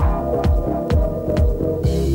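House music from a DJ mix: a steady kick drum about twice a second under a deep, throbbing bassline. Near the end a bright hissing wash, like a cymbal or hi-hats, comes in over the beat.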